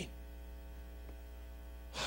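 Steady electrical mains hum with a row of faint overtones, carried in the church's microphone and sound system feed during a pause in the preaching; a single faint click about a second in.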